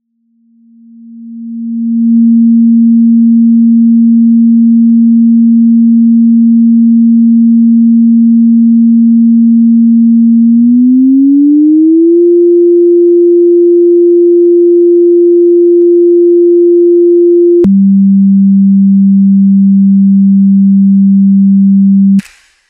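A synthesized sine wave: a single pure tone that fades in over about two seconds and holds steady, glides up to a higher note about ten seconds in, then drops suddenly with a click to a lower note as its frequency is lowered.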